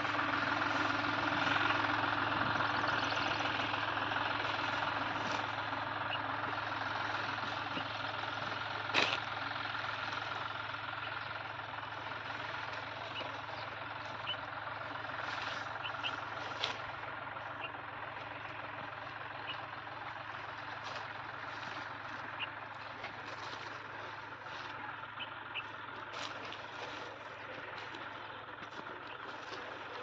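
Tractor engine driving a PTO water pump, running steadily near idle and growing gradually fainter with distance, with scattered short clicks and rustles.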